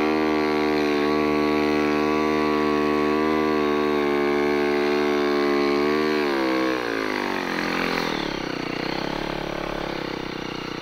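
Snowbike engine held at steady high revs for about six seconds, pulling the bike through deep powder, then the revs drop off and waver at a lower, quieter pitch near the end.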